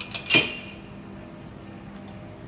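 A single sharp clink of cocktail barware about a third of a second in, ringing briefly, with two lighter knocks just before it.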